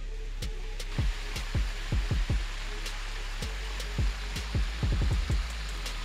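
Steady rush of water pouring over a spillway, with a scattering of short, low thumps through it.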